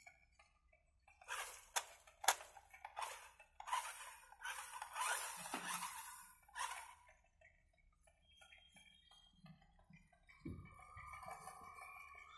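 Remote-control model car with a floor-scrubbing pad being driven over a concrete floor, heard faintly. A few sharp clicks come first, then uneven stretches of scraping noise from the wheels and scrubber on the floor, a pause, and a weaker stretch near the end.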